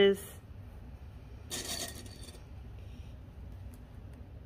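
Fleece fabric rustling as it is handled, one brief rustle about a second and a half in, over a low steady background hum.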